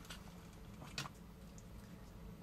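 Two faint clicks of plastic toy robot parts being handled and moved into place, one near the start and one about a second in, over a low steady hum.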